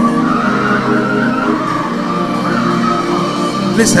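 Background music of sustained, slowly shifting held chords, steady in loudness, with a single spoken word at the very end.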